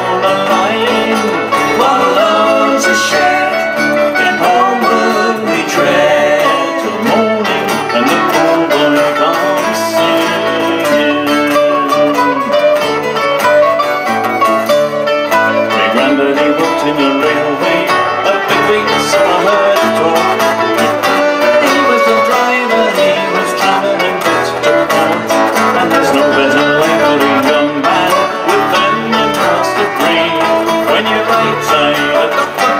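Acoustic folk band playing live: fiddle over strummed and picked acoustic guitars, mandolin and acoustic bass guitar, at a steady tempo.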